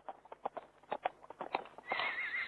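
A quick, uneven series of sharp clicks or knocks, about six to eight a second, getting louder, with a short warbling tone starting right at the end.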